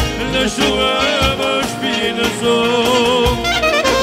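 Albanian folk dance music for a valle circle dance, with an ornamented, wavering melody line over steady accompaniment.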